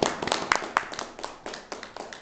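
A few people applauding by hand, with uneven, overlapping claps.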